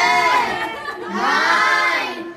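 A small group of people cheering with loud, high-pitched excited shouts, in two long cries about a second apart.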